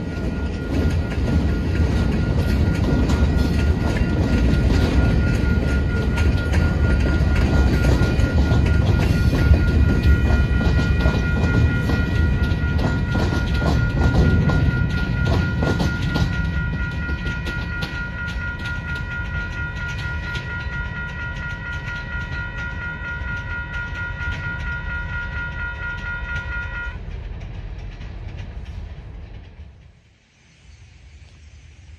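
Union Pacific local train passing over a grade crossing, with a low rumble and wheels clattering on the rail joints, while two WCH electronic crossing bells ring with a fast pulsing tone. The train's rumble drops away about sixteen seconds in as it clears. The bells ring on and cut off about ten seconds later when the crossing deactivates.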